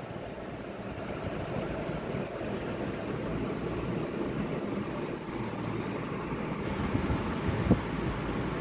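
Steady rushing background noise with no speech, and a brief click near the end.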